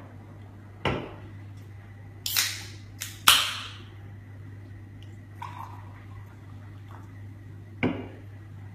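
A can of Kirks Ginger Beer being opened: sharp cracks of the ring pull about two to three seconds in, the loudest followed by a short fizzing hiss of escaping gas. Lighter handling sounds come before and after, with a knock on the table near the end.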